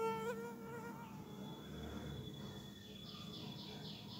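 A buzzing insect, its drone fading out within the first second, followed by a faint high rhythmic chirping about four pulses a second that starts near the end.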